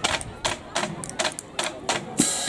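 Marching drumline playing a quiet passage of sharp, irregularly spaced clicks, several in two seconds.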